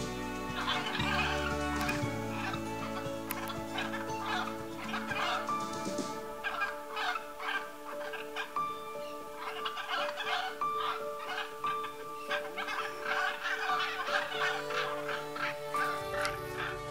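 Hyacinth macaws giving runs of short, rapid calls, over background music with long held chords.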